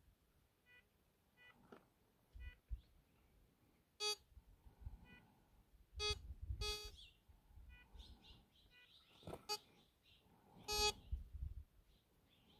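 Metal detector beeping: a dozen or so short, separate tones at a steady pitch, a few of them louder, each beep the detector signalling metal under the search coil.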